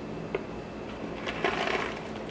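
Foil-lined paper coffee bag crinkling as it is handled and tilted open, with a short click about a third of a second in and a louder rustle in the second half.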